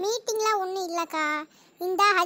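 A high-pitched cartoon character's voice talking in a sing-song way, with a short pause near the end.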